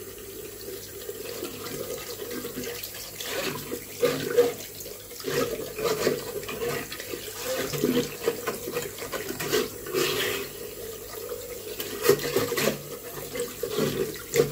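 Bathroom sink tap running steadily into the basin and down the plughole, with irregular scrapes and clicks as a flexible wire drain unblocker is pushed and twisted down the drain to clear a blockage.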